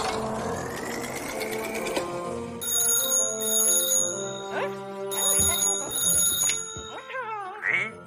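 A telephone ringing in two bursts of about two seconds each, over background music.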